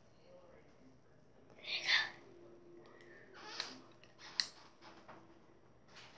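A girl's soft whispering and breathy voice sounds, two short hissy bursts, with a sharp click about four and a half seconds in.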